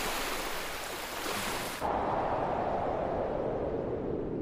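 Wind-like rushing noise of a logo intro sound effect: a steady hiss that turns to a duller, lower rush about two seconds in.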